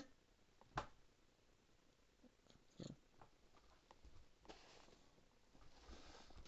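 Near silence: room tone, with a short sharp click a little under a second in and a fainter one near three seconds.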